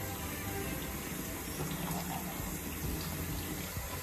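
Bathroom tap running into the sink, a steady rush of water.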